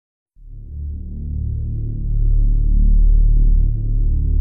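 Background music: a low, deep synth drone that fades in shortly after the start and swells to a steady level.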